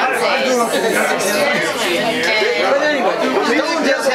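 Several people talking over one another: steady, loud chatter of voices with no single speaker clear.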